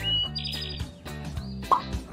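Short cartoon jingle for a title card: music over a steady bass, with a whistle sliding upward at the start and a quick high warble soon after. A few short plucked notes near the end.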